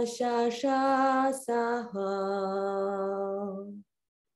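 A woman singing solo, unaccompanied: a few short held notes, then one long, slightly lower held note that cuts off abruptly near the end.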